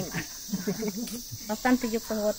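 A steady high-pitched chorus of rainforest insects, with a woman's voice drawing out a falling note at the start and chanting short repeated syllables near the end.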